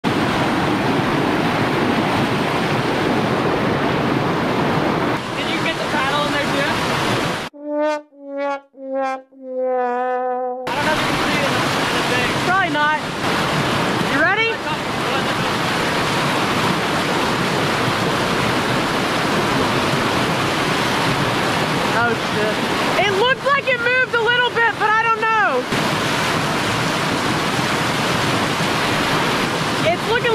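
A whitewater rapid rushing steadily over rocks. About eight seconds in, the water sound cuts out for a few seconds while a short inserted tune plays several notes stepping down in pitch, the last one held. Voices call out over the water twice later on.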